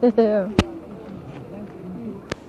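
A voice speaking or laughing for the first half-second, one sharp click just after, then faint voices in the background.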